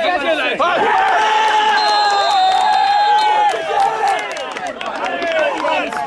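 Men shouting at a football match: about a second in, one voice holds a long yell of nearly three seconds, with shorter shouts from other men around it.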